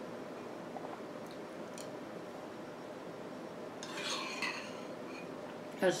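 Metal spoon scraping against a ceramic soup bowl: a few faint clicks early on, then one short scrape about four seconds in.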